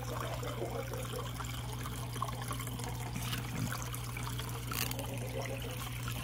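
Water trickling and splashing steadily into a fish tank from a small circulating pump's return hose, over a steady low hum.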